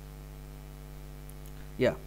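Steady electrical mains hum, a low buzz with a stack of even overtones, running under the recording; a voice says "yeah" near the end.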